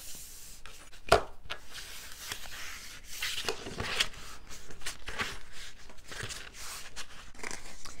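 Card stock being folded and creased by hand against a ruler: scattered paper rustling and rubbing with light clicks, and a sharp tap about a second in.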